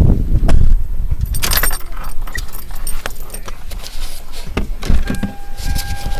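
Keys jingling and the rattle and knock of the camera being handled inside a vehicle, over a low rumble, with two brighter bursts of jingling about a second and a half in and near the end. A steady high tone comes in about five seconds in.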